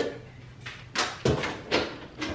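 Refrigerator door being opened, then three short knocks and rattles about a second in as things inside the fridge are moved.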